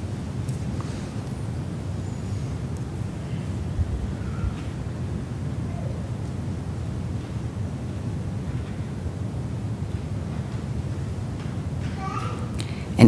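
Room tone during a held moment of silence in a church: a steady low hum, with a brief faint tick a little under four seconds in.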